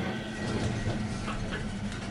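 Steady low hum with faint ticking inside a lift car as the lift sits with its doors shut.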